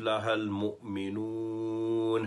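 A man's voice chanting Quranic recitation in Arabic, melodic and drawn out, holding one long level note from about a second in.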